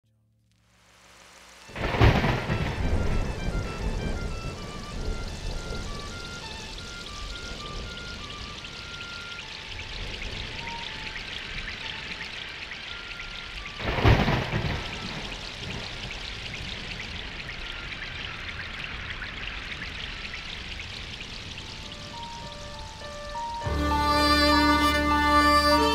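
Steady rain with two thunderclaps, one about two seconds in and another about fourteen seconds in, each dying away slowly, under a sparse melody of single high notes. A fuller music track with a low bass comes in near the end.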